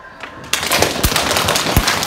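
A sudden burst of applause about half a second in: many hands clapping in a dense, irregular patter.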